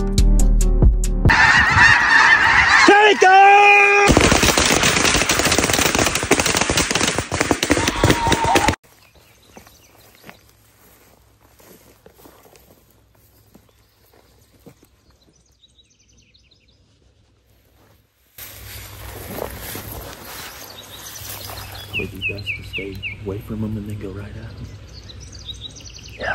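A large flock of snow geese calling overhead in a dense, loud clamour that cuts off suddenly after about eight seconds. A quiet stretch follows, then outdoor ambience with a few short bird chirps near the end.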